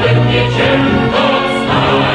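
Choral music: a choir singing held notes whose pitch shifts every half second or so.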